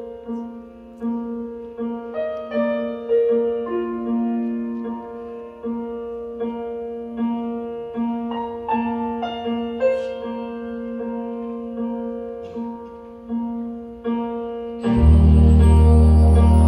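Piano playing a slow, gentle ballad melody in separate ringing notes. About a second before the end, the full jazz big band comes in loudly: horns, bass and cymbals.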